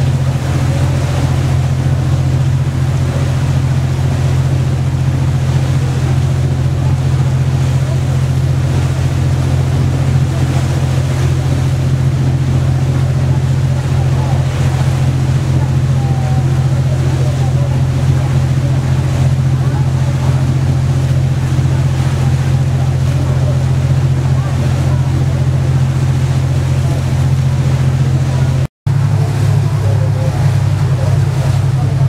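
Steady low drone of a passenger boat's engine, heard on board, with water and wind noise over it. Near the end it cuts out for a moment and comes back slightly changed.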